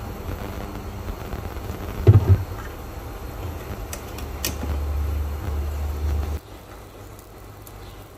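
Cooking oil poured from a plastic bottle into a nonstick pan, then the bottle handled and capped, with a sharp knock about two seconds in and light clicks near four and a half seconds. Under it runs a low steady hum that cuts off suddenly a little after six seconds.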